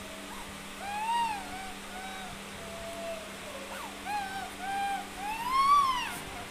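A young girl crying: a string of short, pitched whimpering wails that rise and fall, the longest and loudest one near the end.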